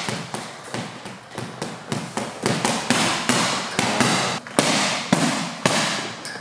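Boxing gloves striking a hanging heavy punching bag in a fast, uneven run of punches, several smacks a second with short combinations.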